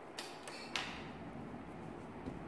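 Faint handling sounds as a pen is picked up over a paper worksheet, with two short clicks, the sharper one about three-quarters of a second in.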